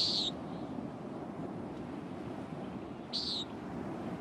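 Steady low ambient wash from a coastal park soundscape, with two short high calls, typical of birds: one right at the start and one about three seconds in.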